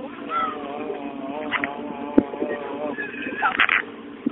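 A person's voice drawn out in a long, wavering pitched sound, with a sharp click about two seconds in and a short burst near the end, over a steady low hum.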